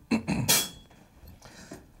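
A man clearing his throat once, short and loud, near the start; then only quiet room sound.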